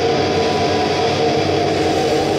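Live grindcore band at full volume: heavily distorted guitars and bass holding a dense, steady drone of sustained notes, with no clear drum beat.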